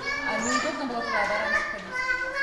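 A small child's voice talking, with other young children's voices in the room.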